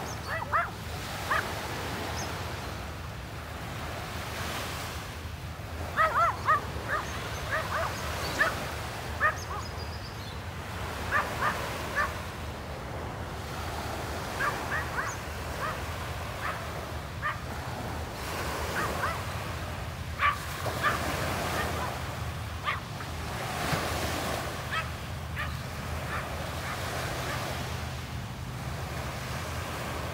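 Small waves washing onto a sandy beach, with a dog barking in short bouts every few seconds; the barks are the loudest sounds.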